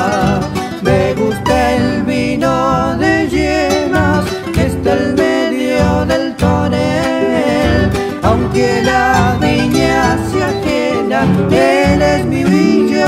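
A Cuyo cueca played on acoustic guitars with guitarrón bass: a strummed rhythm under a melodic guitar line.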